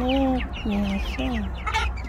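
A flock of young chickens clucking and chirping as they feed, many short high chirps over a few lower drawn-out calls, with a sharper squawk near the end.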